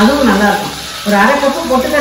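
A woman speaking in two phrases with a short pause between them, over a steady faint hiss.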